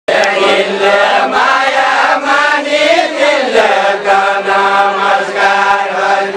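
Deuda folk song from far-western Nepal, sung by a group of voices together in a chant-like melody that begins abruptly.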